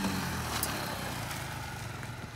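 Small motorcycle engine running as the bike rides past and away; its sound fades steadily.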